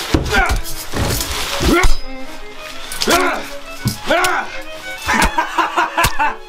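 A man crying out in pain again and again, about once a second, each cry rising then falling in pitch, over dramatic music. A few heavy thuds land in the first two seconds.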